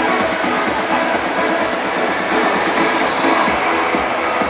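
Electronic background music with a steady beat.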